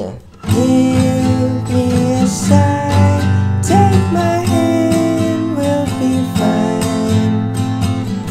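Yamaha acoustic guitar strummed in a down, down, up, up, down, up pattern through A minor, G and F chords, starting about half a second in. A voice sings along over the chords.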